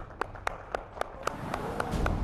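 Hand clapping in a steady run of about four sharp claps a second.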